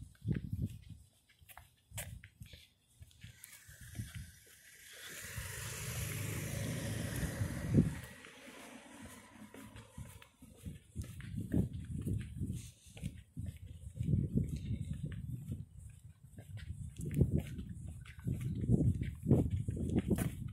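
Outdoor walking ambience: irregular low rumbles and thumps of wind and handling on a handheld microphone. In the middle, a broad rush of noise swells and fades over about five seconds.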